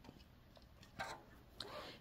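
Quiet handling of a cross-stitch needle and floss in 14-count aida cloth: a single light tick about a second in, then a soft rasp of thread drawn through the fabric near the end.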